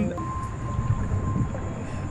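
A low, steady rumbling noise from a dark, eerie video clip, with a faint steady tone that stops about a second and a half in.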